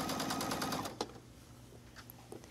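Sewing machine stitching bias tape onto fine gauze, its needle running fast and evenly. It stops a little under a second in, with a single click, and then falls quiet.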